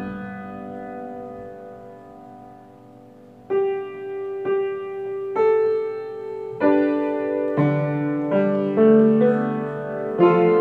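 Solo piano played in slow chords. A held chord fades away over the first three seconds or so, then fresh chords are struck about once a second.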